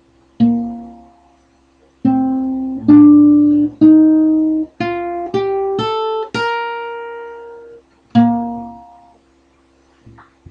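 Guitar riff played one note at a time: a single note, then after a pause a run of seven notes climbing in pitch, the last left ringing, and one final lower note.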